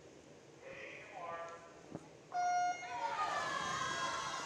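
Electronic race-start signal: one short, flat beep about two seconds in that sends the swimmers off the blocks. Spectators shout and cheer right after it.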